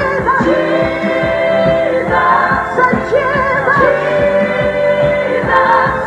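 Live gospel song: a female lead singer over a band of electric guitar, keyboards and drums, with a backing singer, the drums keeping a steady beat.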